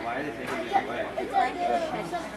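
People chatting near the microphone, words indistinct.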